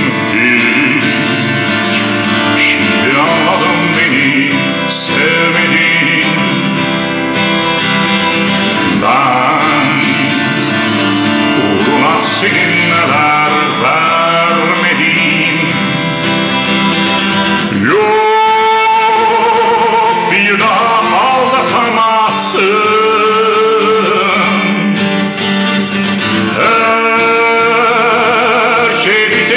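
A man singing a slow song in Turkish to his own strummed acoustic guitar, with long wavering held notes in the second half.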